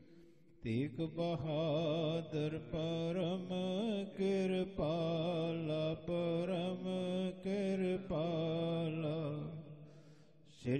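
A man's voice chanting in a slow, melodic intoned style, holding and bending long notes with short breaks. It begins about half a second in and fades out near the end.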